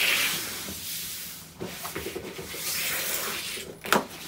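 A fabric backpack being pulled across a laminate floor and handled, its cloth rubbing and rustling, with a short sharp click near the end.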